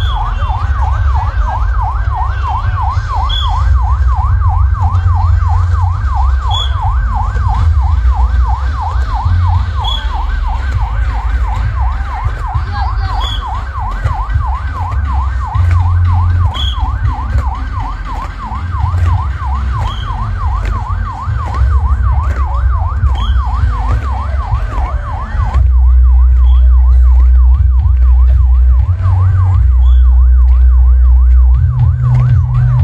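An electronic siren warbling rapidly up and down, a few cycles a second, over a heavy low rumble. Near the end the siren grows fainter while the rumble becomes steady and louder.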